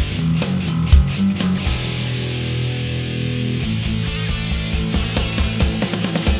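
Distorted electric guitar, a Gibson Flying V, playing a heavy metal riff over a backing track with drums. A chord rings out in the middle, then a fast, steady run of kick-drum hits comes in at about four seconds.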